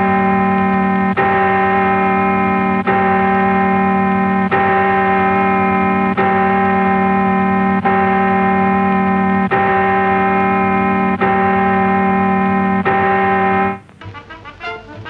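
A single held musical tone with rich overtones, like a sustained organ note, steady in pitch and loud. It is broken by a brief dip about every second and a half and cuts off just before the end.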